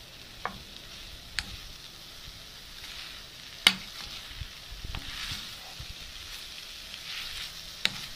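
Long beans frying in oil in a pan with a steady sizzle, cooked in the oil alone without water, while a spatula stirs them. The spatula knocks sharply against the pan a few times, loudest about three and a half seconds in.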